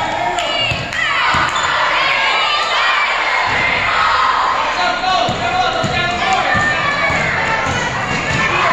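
A basketball bouncing on a gym floor during a youth game, with children and spectators shouting and cheering.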